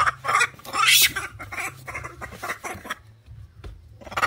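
Young macaque giving a string of harsh, noisy screeches over about three seconds, loudest about a second in, with scuffling on the bamboo slats.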